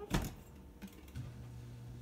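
A sharp click, then about a second in a GE Adora dishwasher starts up with a steady low hum: the machine running again after its control board has been reset.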